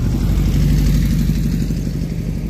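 Dune buggy engine running as the buggy drives past close by, its hum growing loudest about a second in and then easing off.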